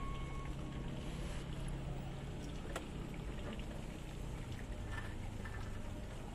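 A steady low mechanical rumble with a low hum, which drops slightly in pitch about halfway through, and one sharp click a little under three seconds in.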